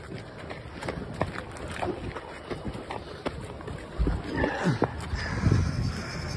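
Hurried footsteps and scuffs on asphalt as people haul a fire hose along the road, with irregular knocks throughout. About four seconds in it grows louder with rough, breathy sounds of someone breathing hard from the effort.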